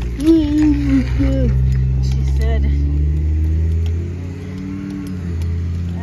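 School bus engine idling, a steady low drone that drops in level about four seconds in. A wordless voice rises and falls over it in the first second or two.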